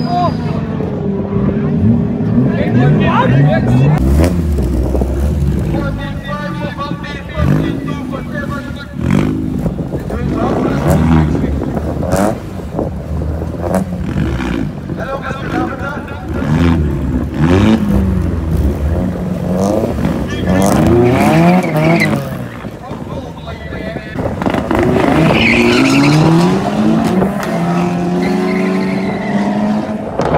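Drag-racing cars revving and accelerating away from the start line, the engine pitch climbing and dropping back repeatedly through the gear changes.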